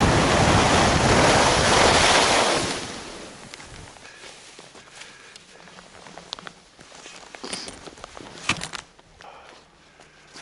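Wind rushing over the camera microphone and skis running on groomed snow during a fast downhill run, loud for about the first three seconds and then dropping away as the skier slows to a stop. After that, faint scattered crunches and clicks of snow and gear, with one sharper click near the end.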